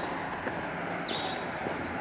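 Steady road traffic noise, with a bird giving a short chirp about a second in.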